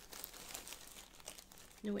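Clear plastic bag crinkling as a ball of yarn is handled in it: a run of soft crackles.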